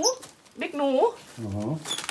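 A pet animal's repeated short whining calls, each rising in pitch, with one deeper call in the middle.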